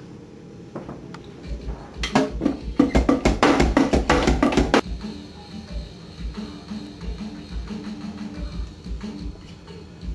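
Drumsticks striking the pads of a Roland electronic drum kit, heard acoustically as sharp clacks with the kick pedal thudding underneath. A dense flurry of hits about two seconds in lasts roughly three seconds, then the playing goes sparser and quieter.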